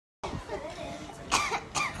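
A person coughing twice, two short bursts about half a second apart in the second half, over faint background voices.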